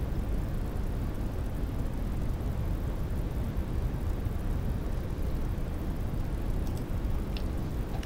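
Steady low rumbling background noise, with two faint clicks near the end.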